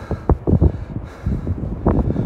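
Wind buffeting the microphone in irregular low gusts and thumps.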